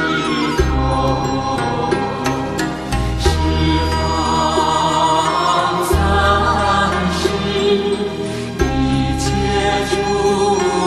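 Buddhist devotional music: mantra-style chanting over sustained low notes that change every few seconds, with light struck accents.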